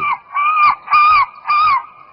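Recorded animal calls played down the phone line as the supposed recording of the dog: about four short cries, each rising and falling in pitch, coming roughly twice a second.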